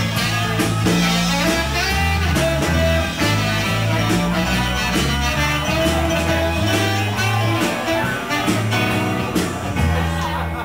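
Live rock band playing an instrumental stretch of a blues-rock song, with electric guitars over a low line that changes note about every half second, and no singing.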